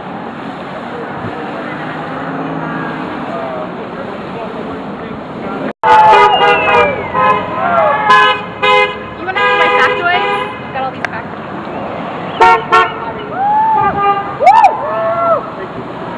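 Street traffic noise, then about six seconds in a run of car horn honks from passing vehicles, short and long blasts, several seconds in all. Near the end, voices call out between the honks.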